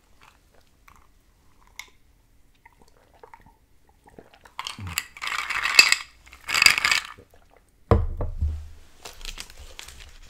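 Two loud crinkly, crunchy bursts about five and six and a half seconds in, then a single dull thump about eight seconds in. Near the end a paper fast-food biscuit wrapper is folded with softer crinkling.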